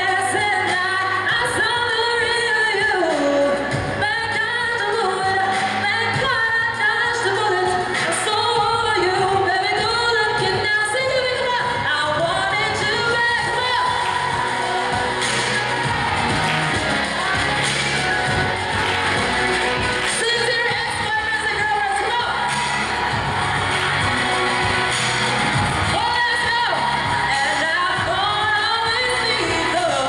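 A singer singing live into a handheld microphone over backing music, the voice sustained and gliding through long phrases without a break.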